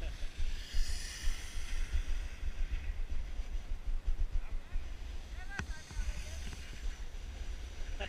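Wind buffeting the microphone of a camera worn by a skier moving downhill, a steady low rumble, with skis hissing and scraping over soft spring snow, loudest in a turn early on. A short voice sounds briefly past the middle.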